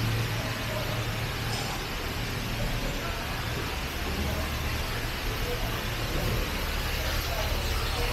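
Steady low hum and rumble of indoor building ambience, with faint, indistinct voices in the background.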